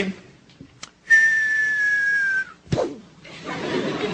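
A single clean whistle held for about a second and a half and sagging slightly in pitch, then one heavy thud as a man drops face down onto a tabletop stage.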